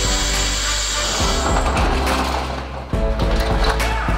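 Power drill boring into a metal lock cylinder, a steady whir that stops about one and a half seconds in, over background music that carries on.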